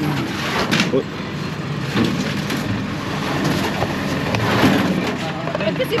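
Busy street noise: people talking in the background over traffic, with a few short knocks and clatters as things are handled and unloaded from a jeepney.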